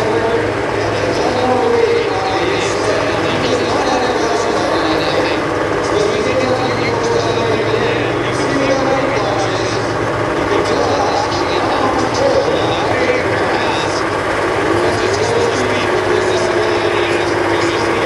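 Caterpillar diesel engine of a late-1950s FWD Wagner four-wheel-drive tractor running steadily, with no revving, as the tractor sits and manoeuvres after its pull.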